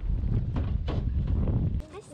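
Wind buffeting the microphone as a loud low rumble, with two light knocks about half a second apart in the middle; it cuts off suddenly near the end.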